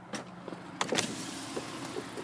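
Clicks of a car's front door handle and latch as the door is opened: a light click near the start, then two sharp clicks close together about a second in.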